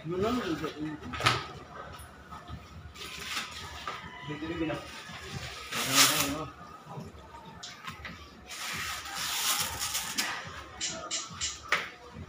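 Indistinct voices talking in the background, with a few sharp knocks and some rustling.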